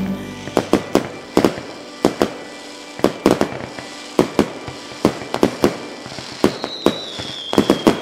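Fireworks going off: an irregular run of sharp bangs and crackles, some in quick clusters, with a thin high whistle sliding slightly downward in the last second and a half.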